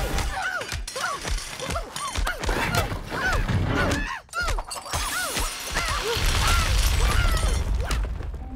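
Cartoon soundtrack: music mixed with crashing, rattling sound effects, heavy low thumps and many quick swooping squeaks.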